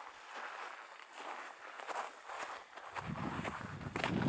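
Footsteps crunching on a frosty forest trail, about two steps a second. A low rumble comes in about three seconds in.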